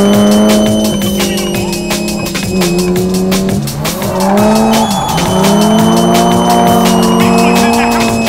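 Old BMW drift car's engine heard from inside the cabin, held high in the revs while sliding, dipping about four seconds in and climbing again, with tyres squealing. A fast-beat music track plays over it.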